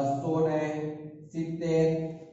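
A man's voice drawn out in two long syllables at a nearly even pitch, each about a second long with a short break between them, like words read aloud slowly while writing.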